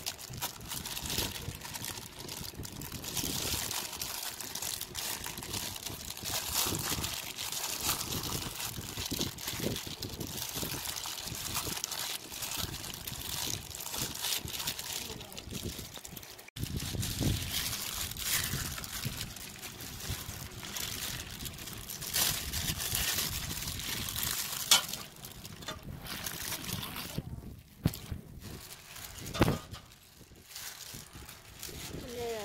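Plastic bag crinkling and rustling over a bare hand as it scoops a milky rice-flour batter from a plastic tub and works it into dry rice flour in a plastic basin, with some liquid sloshing and pouring.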